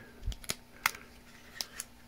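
About five light clicks and taps of fingers and nails on a handheld radio's plastic casing as it is handled, the loudest about a second in.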